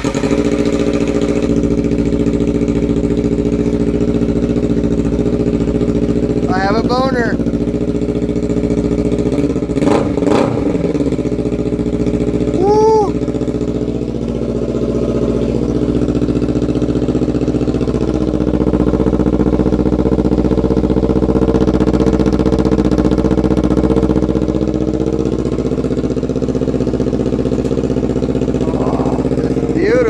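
Kawasaki Ninja 300 parallel-twin engine idling steadily through a newly fitted short aftermarket muffler, just after being started.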